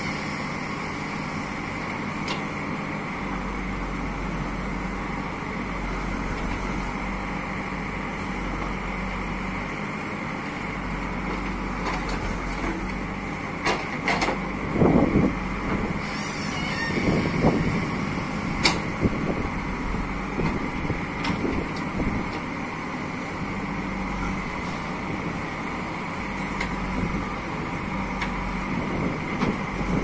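JCB 3DX backhoe loader's Kirloskar diesel engine running steadily under load while the backhoe digs. About halfway through it grows louder for a few seconds, with several sharp knocks.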